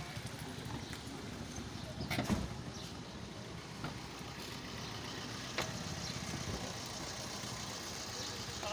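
Car engine idling steadily amid outdoor street noise, with a couple of sharp knocks, one about two seconds in and another past halfway.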